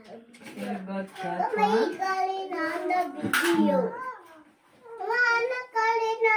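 A young child's high voice talking and sing-song vocalising, with some held notes, in two stretches broken by a short pause about four seconds in.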